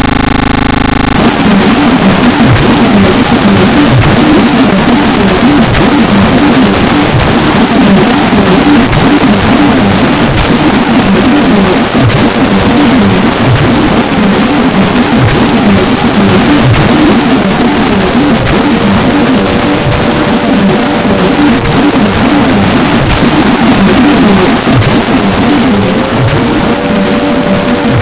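Harsh noise music: a loud, dense wall of distorted static that cuts in abruptly. About halfway through, a faint tone starts to waver up and down inside it.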